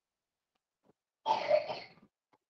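A single cough, a short rough burst a little over a second in, after near silence.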